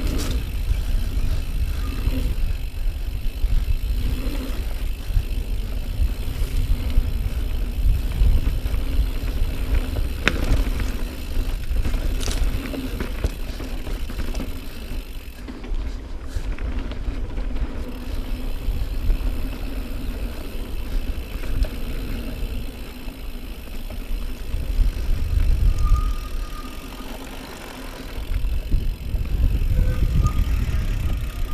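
2018 Norco Range mountain bike rolling fast down a dirt singletrack: a continuous low rumble of tyres and trail, with a few sharp clicks and rattles from the bike as it goes over bumps.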